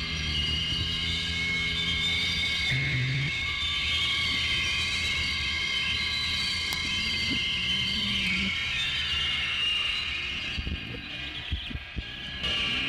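Experimental noise-drone music: dense layers of sustained electronic tones, high whining ones over lower droning ones that shift in pitch by steps. Near the end it thins out and drops in level.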